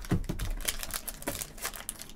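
Foil-wrapped trading card packs crinkling and crackling as gloved hands handle them, a rapid, irregular run of small clicks.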